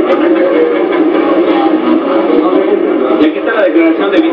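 Speech only: a man talking, muffled and hard to make out, on old videotape sound.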